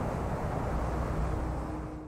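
Outdoor background noise: a steady low rumble, with a faint steady hum joining about a second in, fading out at the very end.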